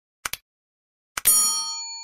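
Two quick mouse clicks, then about a second later another click and a single bright bell ding that rings on and slowly fades. These are the sound effects of a subscribe-button-and-notification-bell animation.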